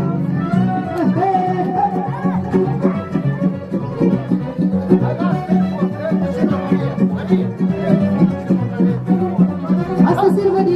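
Lively Moldovan folk dance music for a hora, with a fast melody over a steady beat.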